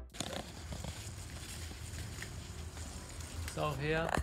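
Quiet room tone with a steady low hum and faint scattered crackles, then a man's short voiced sound near the end.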